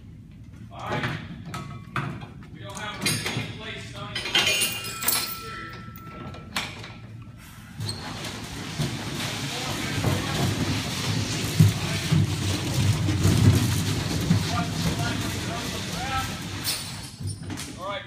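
A line dragged out across a concrete floor in a simulated hose-line advance. Knocks and clatter come first, then a steady scraping rush that builds for about nine seconds before easing off.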